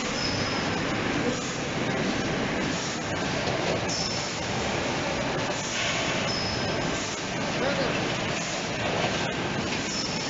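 Beer bottling line running: the triblock rinser-filler-capper and bottle conveyors make a steady, dense mechanical clatter and hiss, with a few brief high squeaks.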